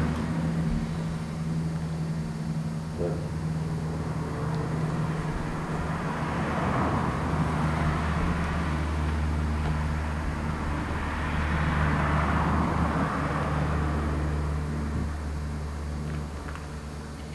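A steady low mechanical hum, with a rushing noise that swells and fades twice, about six and twelve seconds in.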